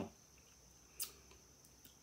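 A quiet room with a faint, steady high-pitched tone and one short, sharp click about a second in.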